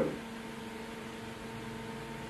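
A man's voice breaks off at the very start. Then a steady low hum with a light hiss runs on as the room tone.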